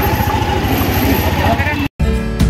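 Auto-rickshaw engine running with a steady low throb under the voices of a street crowd, cut off abruptly just before the end.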